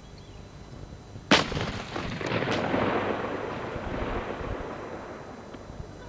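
A single loud rifle shot about a second in, followed by a long noisy tail that swells and then fades away over about three seconds.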